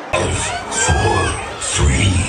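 Dance music with a heavy bass beat starts abruptly, and the audience shouts and cheers over it.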